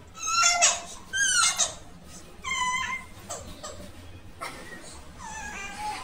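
A toddler's short, high-pitched squeals and whimpers: three rising cries in the first three seconds, then a few fainter short sounds.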